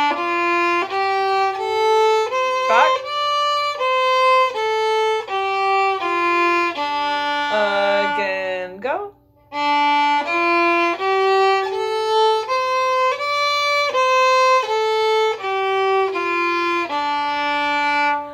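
Fiddle playing the D minor pentatonic scale (D, F, G, A, C, D) slowly, one bowed note at a time at about two notes a second, climbing and then coming back down. The scale is played twice, with a short break a little under halfway through.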